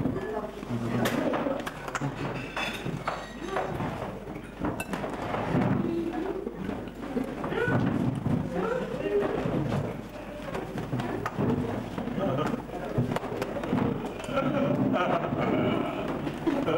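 Several men's voices talking and overlapping in a lively group conversation, with a few short knocks among them.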